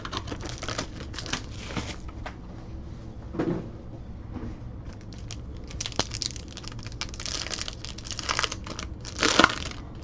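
A foil trading-card pack crinkling and tearing as it is opened by hand, with the loudest burst of crinkling near the end. Earlier come light clicks and rustles of the box being handled.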